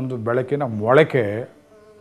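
A man's voice, with a low, steady pitch, breaking off about one and a half seconds in; a faint steady hum is left after it.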